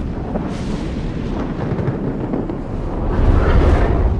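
A loud, dense rumbling noise with heavy bass, swelling louder near the end.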